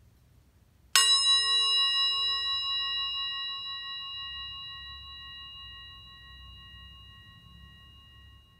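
A handheld metal singing bowl struck once with a wooden mallet about a second in, then ringing with several overtones that slowly fade, the lowest one dying away first.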